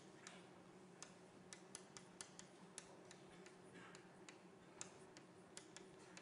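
Near silence: lecture-room tone with a faint low hum and faint, irregular clicks, a few each second.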